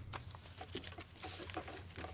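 Quiet room tone: a steady low hum with faint scattered clicks and rustles.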